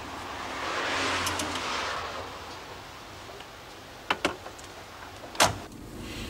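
A car driving past on the street, swelling and fading about one to two seconds in. Later come a couple of light clicks and then a single sharp knock near the end.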